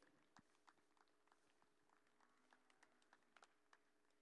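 Near silence: faint room tone with a low steady hum and a few soft scattered clicks.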